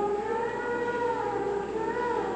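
Children's choir singing, the voices holding long notes that rise and fall gently in pitch.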